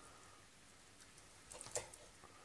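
Near silence, then a few faint short clicks and squelches about one and a half seconds in as a knife cuts through the leg joint of a poached pheasant on a wooden board.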